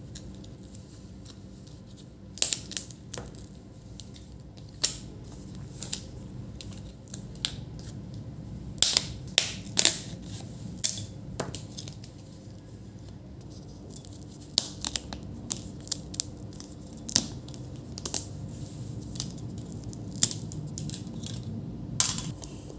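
Plastic display bezel of an Asus ZenBook UX425 laptop being pried off the lid with a plastic pry tool: irregular sharp clicks and cracks as the bezel comes away, with a cluster of louder ones near the middle, over a faint steady low hum.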